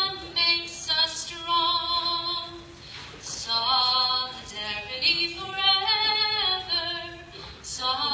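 A woman singing a labor song unaccompanied into a microphone, heard through a small PA speaker. Her voice holds long notes, with short breaks for breath about three seconds in and near the end.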